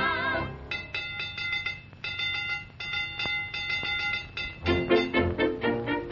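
Early-1930s cartoon orchestra music. A sung note with vibrato ends about half a second in, then a light passage of high tinkling notes plays, and near the end the full band comes back louder with short bouncy notes.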